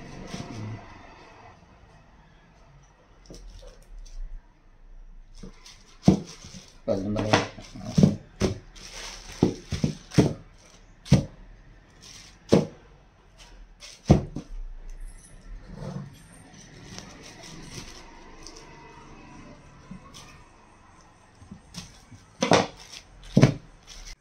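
Bars of homemade laundry soap and a knife being handled on a plastic-covered table: after a quieter start, irregular sharp knocks and clicks as the bars are cut, picked up and set down, with some plastic crinkling, and two loud knocks near the end.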